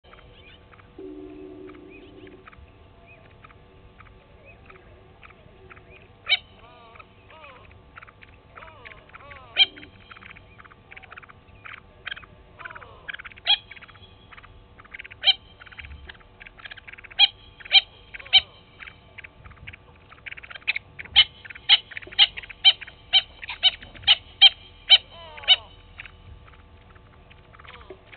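Natal spurfowl calling: short, sharp calls that start out scattered and build into a fast, loud series of about two to three a second near the end. Fainter chirps and gliding calls from other birds run underneath.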